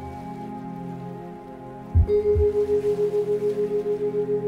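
Singing-bowl meditation music: sustained ringing bowl tones hold steady, then a pair of low thumps about two seconds in, and right after them a new, louder bowl tone starts and wavers in loudness as it rings.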